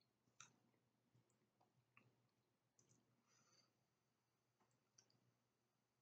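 Near silence: room tone with a few faint, short clicks spread through it.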